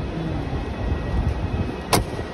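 Steady low rumble of traffic and crowd noise at an airport kerbside, with a brief faint voice near the start and a single sharp click just before the end.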